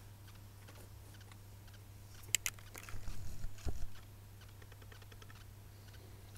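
Small plastic clicks and handling noises from a lip-gloss tube and its applicator wand. There are two sharp clicks about two and a half seconds in, then about a second of light tapping and rattling, all over a low steady hum.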